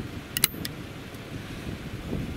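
Wind buffeting the microphone in a steady low rumble, with a quick cluster of a few sharp clicks about half a second in.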